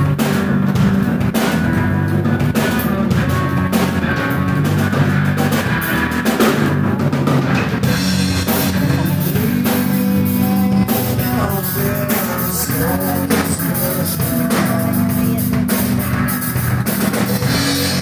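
Live rock band playing, with a drum kit and electric guitars.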